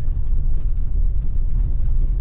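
Cabin noise of a Nissan Navara NP300 ute driving on an unsealed bush track: a steady low rumble of engine and tyres, with faint small clicks and rattles.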